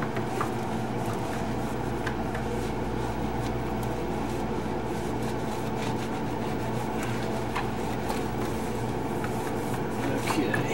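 Dry towel wiping and rubbing the plastic floor of a freezer compartment, soft scattered scrapes and taps over a steady low hum.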